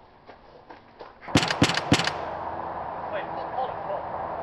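A quick volley of loud, sharp bangs, like gunfire, about a second and a half in, after a few faint clicks; a steady, louder background follows.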